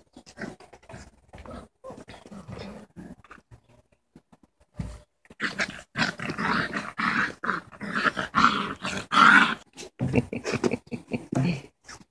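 Dalmatian puppies about six weeks old growling at each other in play. Scattered small noises come first, then a loud, rough bout of puppy growls from about halfway through for some four seconds.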